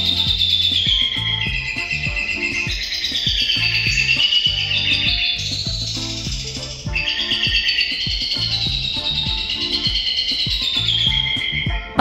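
Caged songbirds singing a continuous high, warbling song, with a short break a little before the seven-second mark. Background music with a steady low beat runs under the song.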